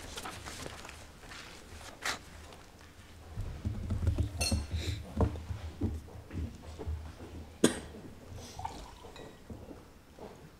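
Footsteps on a hard floor with scattered clicks and knocks in a quiet room; a short metallic clink comes about four and a half seconds in, and a sharp click near eight seconds is the loudest sound.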